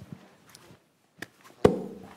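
A small click, then a single sharp knock near the end with a short ringing tail.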